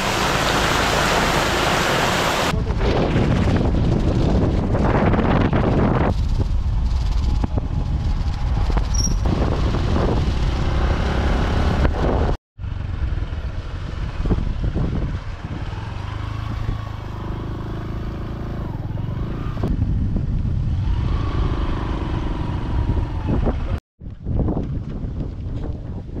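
Heavy rain hissing for the first couple of seconds, then a motorcycle running on a ride with steady wind and road noise, broken twice by a sudden drop to silence.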